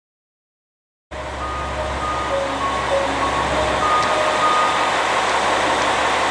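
After a second of silence, steady outdoor noise with a low rumble comes in, and over it a slow melody of short, clear tones at changing pitches.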